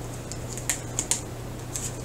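Tarot cards being handled as a card is drawn off the deck: a handful of light, sharp clicks spaced irregularly.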